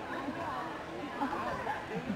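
Indistinct talking of several people overlapping, with no clear words.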